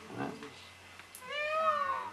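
A peacock giving one drawn-out call whose pitch rises briefly and then falls, starting a little past halfway in.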